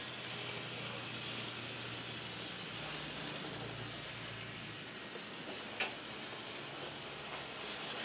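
Faint, steady running whir of small N-gauge model streetcars moving on their track, over a low hum, with a single small click about six seconds in.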